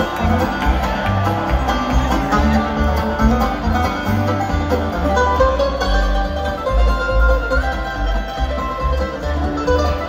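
Live bluegrass band playing, led by banjo and acoustic guitar over a moving upright-bass line, heard from the crowd at a concert.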